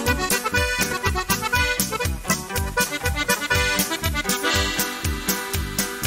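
Norteño corrido music: an accordion plays an instrumental break over a steady bass beat.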